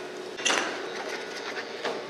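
Kitchen dishes and utensils handled on a counter: a sharp knock about half a second in and a smaller one near the end, over a steady hiss of room noise.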